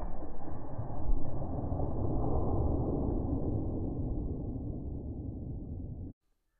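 Wind buffeting the microphone: a low rumbling noise that swells about a second in, then slowly fades away.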